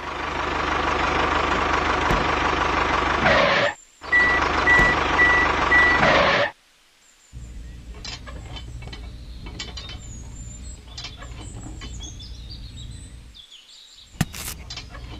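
A heavy vehicle running with a repeating high reversing beep, which stops abruptly after about six and a half seconds. Then come quieter birds chirping and small clicks and taps as the toy tractor's hitch parts are handled.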